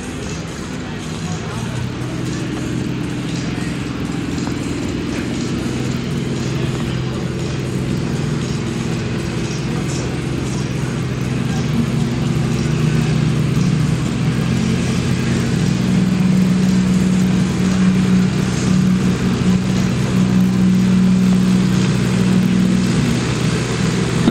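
SAME farm tractor's diesel engine pulling a weight sled, running at a steady pitch under heavy load and growing gradually louder as it comes closer.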